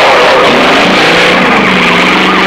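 A car speeds over a rough dirt track with its siren going. From about a second in the siren sounds as a fast, wavering wail over the noise of the car, and a steady low tone comes in alongside it.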